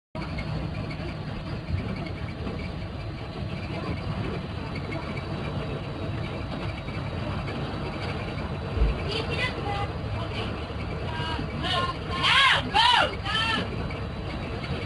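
Steady engine and road rumble inside a moving school bus. From about nine seconds in, children's high-pitched voices come in, with loud yells near the end.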